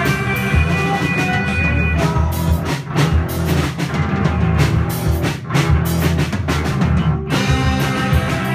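Live rock band playing loudly: held chords at first, then drums and cymbals come in about two seconds in, with a short break just after seven seconds before the band picks up again.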